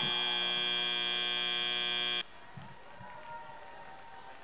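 FIRST Robotics Competition end-of-match buzzer: a steady, buzzing tone that signals the match clock reaching zero. It cuts off suddenly about two seconds in, leaving only faint background noise.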